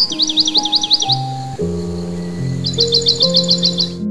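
Slow, sad solo piano music with recorded birdsong mixed over it: a quick run of down-slurred chirps in the first second, then a faster run of about ten high chirps near the end.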